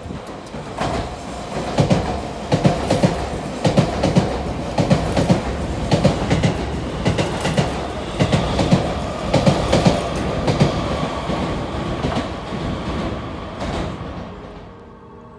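Keisei AE-series Skyliner express train running through the station at speed: its wheels clack over the rail joints in rapid paired beats, car after car, over a rush of air and running noise, with a steady whine joining in about halfway through. The sound fades as the last car clears.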